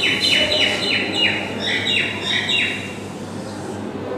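A small bird chirping: a quick, regular run of short high notes, each falling in pitch, about three a second, stopping near three seconds in.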